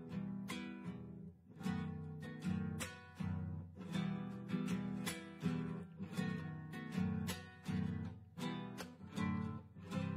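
Solo acoustic guitar playing the strummed introduction to a zamba, chords struck in a steady, lilting rhythm of a little under two strokes a second.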